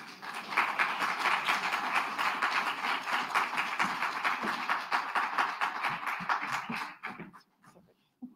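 Audience applauding, a dense steady clatter of many hands clapping that thins out and stops about seven seconds in.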